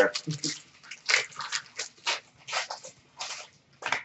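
Trading cards being handled: a string of short, irregular rustles and taps as cards are flipped and shuffled by hand.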